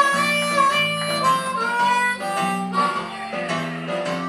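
Blues harmonica playing a solo of held and sliding notes over a band's guitar and bass accompaniment.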